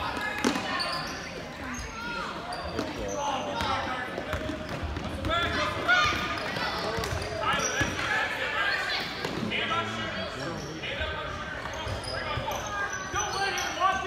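Basketball game sounds in a gym: a ball bouncing on the hardwood floor, sneakers squeaking, and spectators talking and calling out, all echoing in the large hall.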